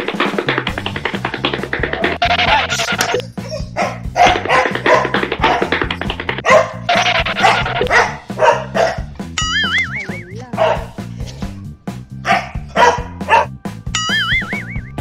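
Background music with a dog barking repeatedly over it, and a wavering, warbling sound effect about two-thirds of the way in.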